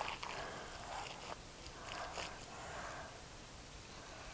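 Gloved hands squeezing and kneading a raw ground beef, rice and cheese mixture in a glass bowl: faint, irregular squishing.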